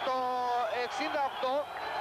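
A man's voice narrating, with one word drawn out on a steady pitch at the start before ordinary speech resumes.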